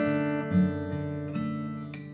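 Song accompaniment in a short gap between sung lines: strummed acoustic guitar chords ringing and fading, with a new chord struck about half a second in.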